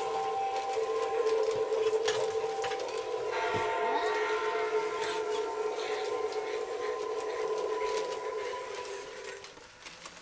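Several held electronic tones sounding together, siren-like, with a brief pitch glide about three and a half seconds in; they fade out shortly before the end.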